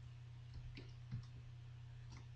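A few faint computer keyboard keystrokes, one a little louder about a second in, over a low steady hum.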